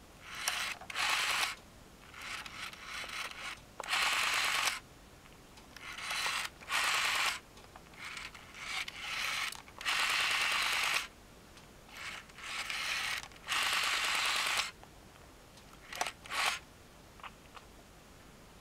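Rotary telephone dial being turned and released digit after digit, about eight times, each return a short whirring, clicking run as the dial pulses out the number.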